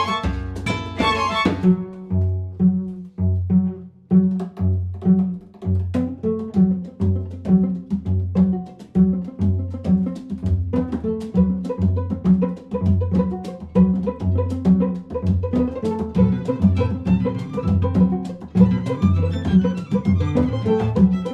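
Classical guitar, string quartet (two violins, viola, cello) and hand drum playing a jazz samba: a repeating low bass line pulsing about every 0.7 s under plucked and bowed string parts. The fuller opening passage thins out about a second and a half in.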